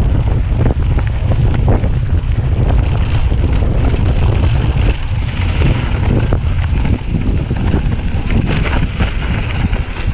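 Wind buffeting an action camera's microphone as a mountain bike rolls fast down a dirt trail, a heavy steady rumble with frequent small rattles and knocks from the bike over the rough ground.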